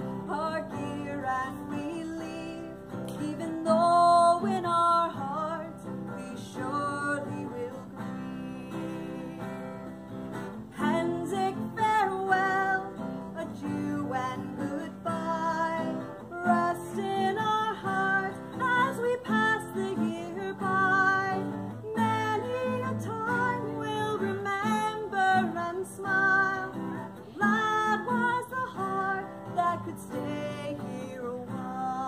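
A woman singing a slow, sad folk song over a strummed acoustic guitar.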